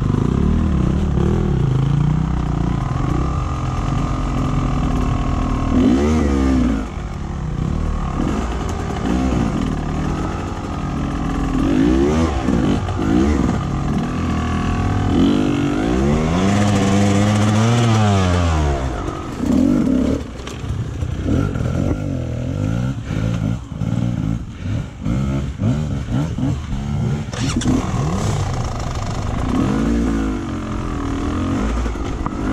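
Dirt bike engine revving in repeated short bursts as it climbs a rocky, steep trail, its pitch rising and falling with the throttle. There is one longer rev a little past halfway, and the revs turn choppier with quick on-off throttle near the end.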